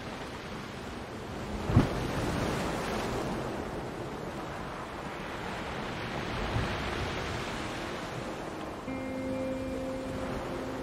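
Ocean waves washing in, a steady rush that swells with a surge and a low thump about two seconds in. Near the end, a few soft held notes of ambient music come in over the surf.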